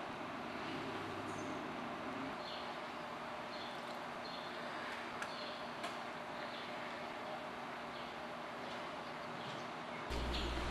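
Steady, quiet background noise with a faint hum, and a scattering of faint, short high chirps from barn swallows at the nest.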